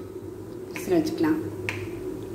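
A voice speaking briefly in a small room, with a sharp click near the end.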